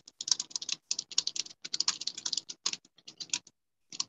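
Rapid typing on a computer keyboard: fast runs of key clicks with short breaks, stopping about three and a half seconds in.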